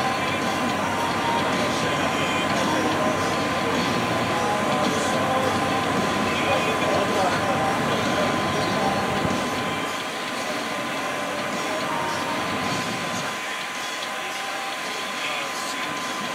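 Steady drone of an electric blower fan keeping an inflatable arch inflated, with a thin constant whine. A low rumble under it fades about ten seconds in, and faint voices can be heard in the background.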